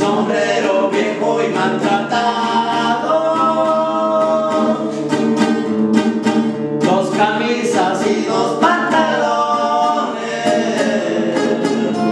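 Corrido sung as a duet by two men's voices over two strummed acoustic guitars. The voices sing two phrases with a short break between them, and the guitars play on alone near the end.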